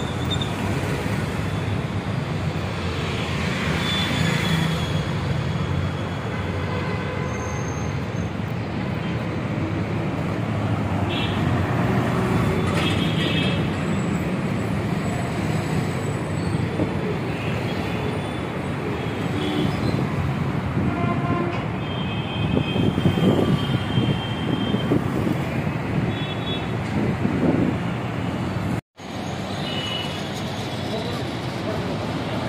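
Steady road traffic noise from a busy city street, with a few short high tones like horn toots. The sound cuts out briefly near the end.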